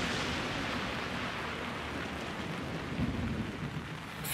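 A long rushing, rumbling roar that began suddenly and slowly dies away, with a slight swell near the end, like a distant roll of thunder.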